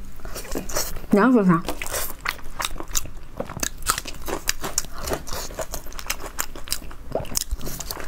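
Close-miked mouth sounds of biting into and chewing a large coiled sausage, made up of many small clicks and smacks. A short, wavering vocal hum comes about a second in.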